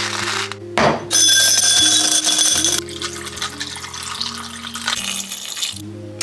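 Ice cubes rattling, then a drink poured over ice into a glass, loudest for about two seconds from a second in and then fading. Background music with sustained low notes plays throughout.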